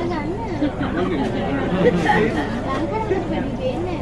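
Indistinct chatter of several people talking at once, with overlapping voices throughout, over a steady low rumble.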